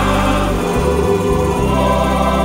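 Gospel worship music: a choir singing over held bass notes.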